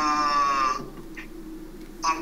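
A man's drawn-out hesitation sound, a held 'uhh' at a steady pitch lasting just under a second, then a quiet pause.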